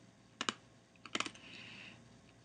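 A few faint computer keyboard key clicks: a pair about half a second in and a short cluster just after a second in, followed by a faint hiss.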